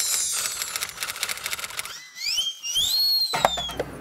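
Rapid keyboard typing clicks as a search term is entered, followed about two seconds in by a whistling tone that climbs in steps and then slides slowly down.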